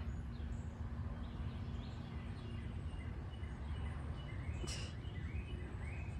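Outdoor background noise with faint, short high bird chirps, mostly in the second half, and one brief rustle or click about three-quarters of the way through.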